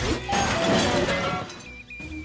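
Cartoon teleport sound effect as a robot beams down in a sparkling light column: a loud noisy burst about a second long, fading out before the end, over background music.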